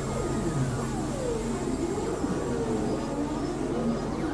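Experimental electronic synthesizer music: tones that sweep down and back up in arcs, one glide after another, over a steady low drone.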